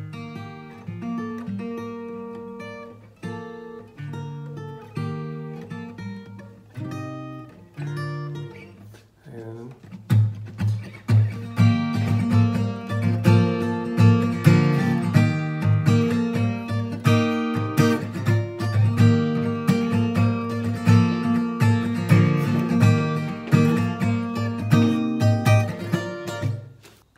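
Acoustic guitar with a capo on the third fret playing the chorus chord progression in G-shape chords, with the G string left ringing open. For about the first ten seconds it plays separate chord strokes with short gaps, then it changes to busier, louder strumming.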